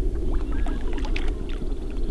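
Lake water lapping and splashing around a float tube as a hooked trout is played close by, with small scattered splashes over a steady low rumble.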